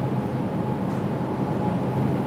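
Steady low hum and rumble of supermarket background noise in a refrigerated aisle, with a faint steady tone running through it.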